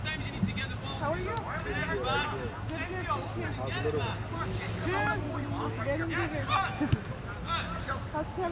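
Overlapping distant voices of players and sideline spectators calling and chattering during a youth soccer game, over a steady low hum. A single sharp knock about seven seconds in.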